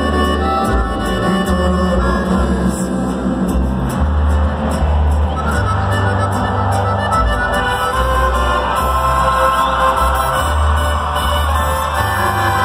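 Live band playing Mexican ranchero-style music at full volume through a concert sound system, heard from the audience, with a bass line moving from note to note every second or so.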